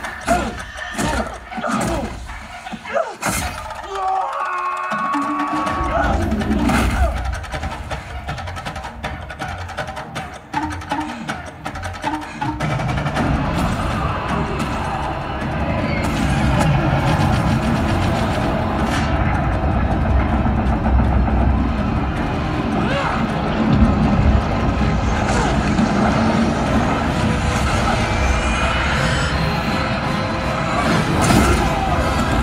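Film soundtrack playing through cinema speakers: score music with fight impacts in the first few seconds, then a dense, heavy low rumble from about twelve seconds in.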